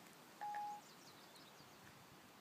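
A single short electronic beep from Siri on an iPod touch, one steady tone just under half a second long, right after a spoken request to Siri.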